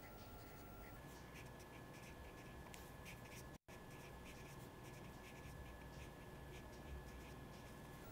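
Marker pen writing on paper: faint short scratching strokes as words are lettered, over a low steady room hum.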